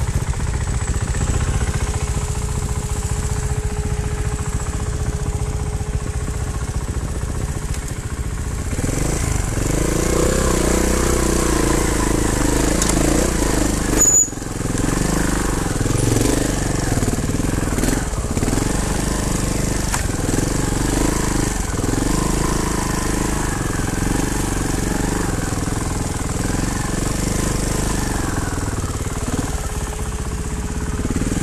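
Trials motorcycle engine running, fairly steady at first, then from about nine seconds in its note rising and falling with the throttle as the bike climbs. There is one sharp knock about fourteen seconds in.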